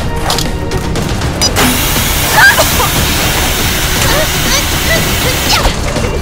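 Fight-scene soundtrack: music with a dense, loud rushing noise that comes in about a second and a half in and cuts off just before the end, with short cries and splintering or crashing impacts mixed in.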